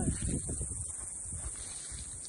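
Footsteps and rustling through dry grass, heard as faint, irregular low thumps.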